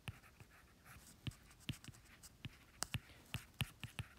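Stylus tip tapping and sliding on an iPad's glass screen during handwriting: a string of irregular, light, sharp ticks.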